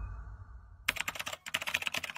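Rapid keyboard-typing clicks, a typing sound effect, starting about a second in after a low rumble dies away.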